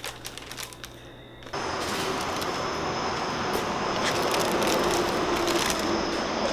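A few light clicks of handling, then, about a second and a half in, a sudden change to steady outdoor noise at night with a thin high tone running through it and scattered crackles, like paper being handled near the end.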